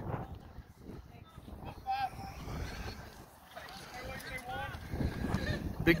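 Faint distant voices of people calling and talking around a baseball field, coming and going over a low outdoor background.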